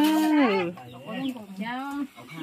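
A person's voice in long, drawn-out notes that rise and fall. One held phrase falls away about half a second in, and a shorter wavering phrase follows in the second half.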